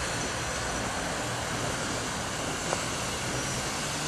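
GWR pannier tank steam locomotive moving slowly along the yard tracks: a steady low rumble and hiss, with one short click a little before the end.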